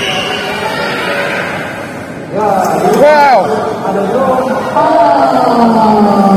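A man's voice in long, wavering, drawn-out tones, like chanting or singing over a PA, with a rapid warble about two and a half seconds in and a long, slowly falling held note near the end.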